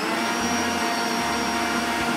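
Electric stand mixer's motor running steadily, whisking egg whites into meringue as sugar is spooned in; its whine rises slightly in pitch at the start and then holds steady.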